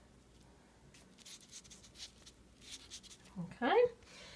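A cotton swab laden with paint stroking across paper: several faint, short scratchy swishes.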